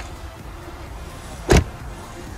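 The driver's door of a 2007 Lexus sedan being shut: one solid thump about one and a half seconds in.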